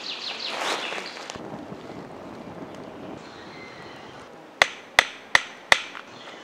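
A rustle in the first second or so. Near the end come four sharp hammering strikes about a third of a second apart, each with a short ringing tail.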